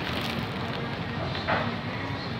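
Crisp baguette crust of a bánh mì crackling as it is bitten into, then chewing, with a short voiced 'mm' about one and a half seconds in.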